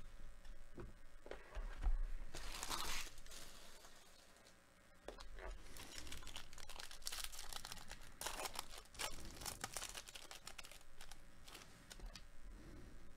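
A trading-card pack's wrapper being torn open and crinkled by hand, in a burst of tearing about two seconds in and a longer stretch of rustling and tearing from about six seconds on.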